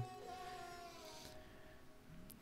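A faint, held bowed string note, its pitch sagging slightly as it fades away over about a second and a half.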